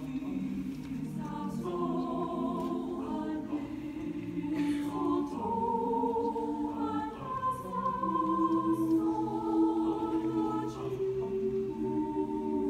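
Mixed high school choir singing in harmony, holding chords that change every second or so.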